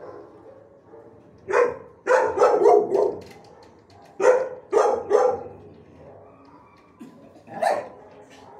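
A dog barking in the kennels of an animal shelter, in short loud runs: one bark, then a quick string of about four, then three more, and a last bark near the end.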